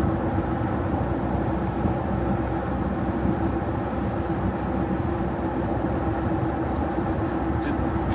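Steady engine and road noise inside a vehicle's cab while driving, an even drone with a faint steady hum and no change in pace.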